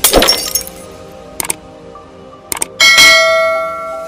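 Outro sound effects: a sharp hit at the start, a few short clicks, then a bell-like notification chime about three seconds in that rings several tones and slowly fades.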